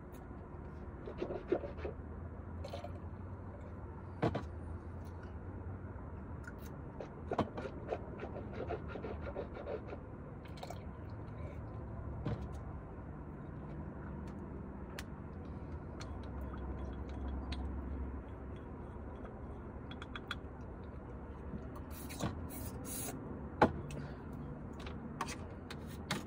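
A toothbrush scrubbing teeth with a gritty tooth powder, with scattered sharp clicks and knocks, the loudest near the end, over a steady low hum.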